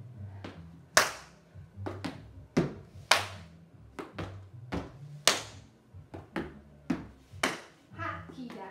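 A solo jazz dancer's shoes hitting a wooden studio floor in steps and stomps. The sharp hits come irregularly, and the loudest fall about every two seconds. Faint music with a low bass line plays underneath.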